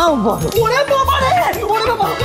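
Wordless yelps and squeals over comic background music with a pulsing bass beat.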